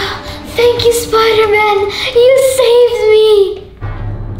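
Background music carrying a wordless, voice-like melody in long held notes that slide from one pitch to the next.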